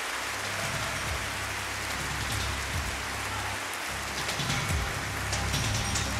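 A large crowd clapping steadily in a big hall, sustained applause. Music comes in underneath shortly after the start and grows stronger toward the end.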